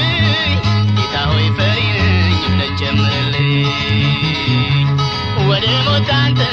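Ethiopian gospel song (mezmur) playing: guitar over a steady, continuous bass line, with a wavering melody line above.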